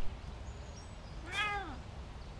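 A cat meowing once, a short call that rises and falls in pitch, a little past halfway through, over a quiet background.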